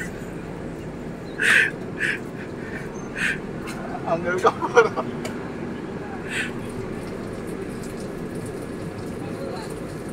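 Steady running noise of a moving passenger train heard inside the carriage, with a few short voice sounds in the first half, the most prominent a brief burst of voice about four to five seconds in.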